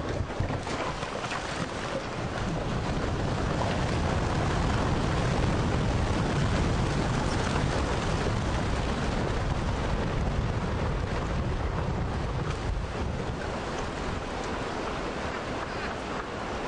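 Rockslide: rock breaking off a roadside cliff and crashing down onto the road. A deep rumble builds a couple of seconds in, runs on for several seconds, then eases, over a steady rushing noise.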